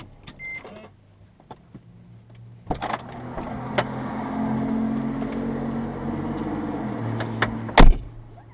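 Car door opening with a sharp click, then a steady electric-motor hum in the car for about four and a half seconds, and the door shut with a loud thud near the end.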